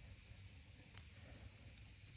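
Near silence: faint background hiss, with one faint tick about a second in.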